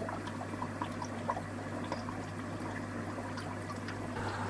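Aquarium water trickling and bubbling, with scattered small droplet ticks over a steady low hum.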